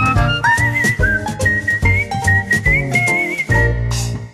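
A TV show's theme music: a high, gliding lead melody over a steady beat and bass, closing on a held note near the end.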